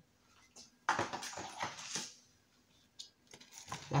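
Fingers spreading strips of raw red pepper in a glass oven dish: a run of light clicks and rustles about a second in, then a few more near the end.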